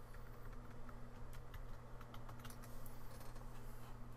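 Computer keyboard being typed on: a run of irregular key clicks as a word is entered, over a steady low hum.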